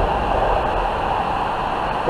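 Steady rumble and hiss of highway traffic on the overpass overhead, even and unbroken.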